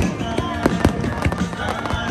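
Fireworks display: aerial shells bursting in a rapid string of bangs, the loudest right at the start, with music playing underneath.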